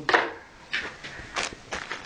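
Handling noise: four short rustling, scuffing bursts close to the microphone, the first the loudest, as things are picked up and moved about.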